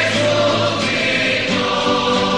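A choir singing a Spanish Easter hymn of praise, with held chords that change about one and a half seconds in.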